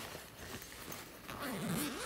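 Zipper of a fabric pencil case being drawn open, a raspy run with a wavering pitch that starts about a second and a half in. Before it come faint sounds of hands handling the case.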